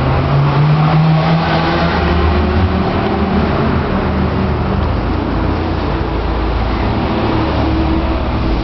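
Steady engine rumble of road traffic, with an engine's pitch rising slightly about a second in.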